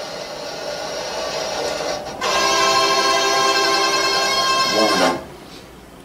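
Two long, steady, reedy chords blown through a mouth-held instrument: a quieter one for about two seconds, then a louder one held for about three seconds that cuts off suddenly.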